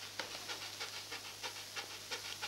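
A dog panting quickly and evenly, several short breaths a second.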